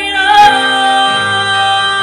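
A female vocalist singing live, holding a long sustained note over keyboard and electric bass accompaniment.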